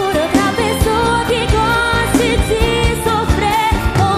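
Live brega band music: a female singer's voice with wavering vibrato over the band and a steady drum beat.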